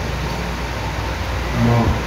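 Steady low rumble and hiss of room background noise during a pause in speech, with a brief voiced sound near the end.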